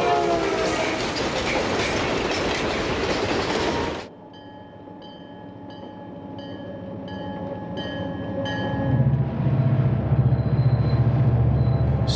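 Southern Pacific diesel freight locomotives. First comes a loud close pass with rumble and clatter. It stops abruptly, and a quieter stretch follows in which a bell rings about twice a second. Then the low rumble of the diesel engines builds up over the last few seconds as the train draws nearer.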